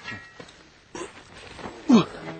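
Shovel and hoe blades digging into loose soil, with a few soft scrapes and knocks. Near the end comes a short, loud call that falls in pitch.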